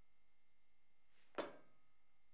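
Near silence, broken once, about one and a third seconds in, by a single short sudden sound that fades quickly: a shoe stepping down on a hard studio floor as a fencer moves forward.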